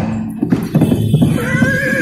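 Recorded horse sound effect played over a stage sound system: rhythmic hoofbeats, with a horse's wavering whinny coming in about halfway through.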